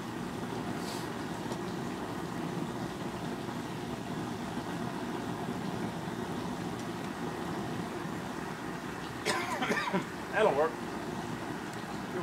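Propane burner under a large aluminum stockpot of seafood-boil water, running with a steady rushing noise. A few short, voice-like sounds come near the end.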